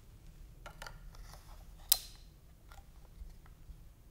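Plastic data logger being slid into its plastic wall bracket: a few faint clicks and rubs, then one sharp click about two seconds in as it snaps into place.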